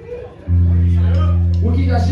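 A loud, low electric bass guitar note comes in sharply about half a second in and is held steady through an amplifier, ahead of the next song.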